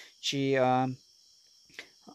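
A man's voice speaking, drawing out one syllable in the first second, then a pause. A faint steady high-pitched hum runs underneath throughout.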